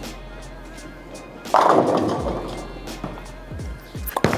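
A Purple Hammer reactive bowling ball rolls down a wooden lane with a low rumble, then crashes into the pins about one and a half seconds in, followed by a few low thuds of falling pins. Background music plays under it.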